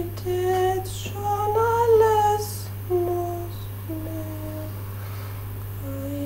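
Slow music: a voice humming a melody of long held notes, over a steady low drone.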